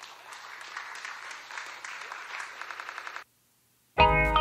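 Applause: a dense patter of clapping that swells slowly over a low steady hum, then cuts off suddenly about three seconds in.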